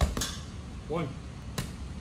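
Boxing gloves punching a hanging heavy bag: a hard hit at the start, a second close behind it, and another about a second and a half in.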